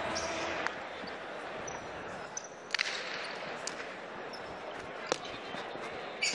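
Hard jai alai ball (pelota) striking the fronton walls and floor during a rally: three sharp cracks about a second apart, over faint voices in the hall.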